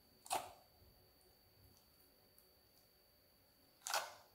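Clear slime squelching and popping as fingers press into it in a glass bowl: two short, sharp pops, one just after the start and one near the end.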